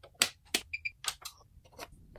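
Sharp switch clicks, the first as the rocker power switch of a Weller WES51 soldering station is flipped. Two short high electronic beeps come in quick succession a little before the middle, then a few more clicks.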